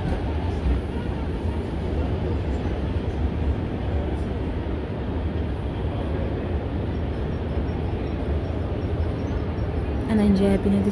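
Steady shopping-mall ambience: a continuous low rumble under an indistinct murmur of crowd voices.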